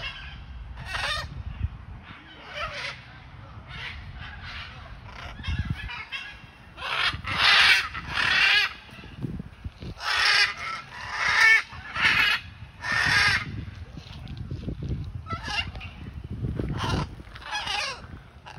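Blue-and-gold macaw giving a series of harsh, raspy squawks, each under a second long, coming thickest and loudest about halfway through.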